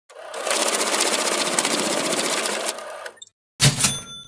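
Intro sound effect: a loud, fast, even mechanical rattle lasting about three seconds, which dies away. Then a sharp strike with a bright ringing ding just before the end.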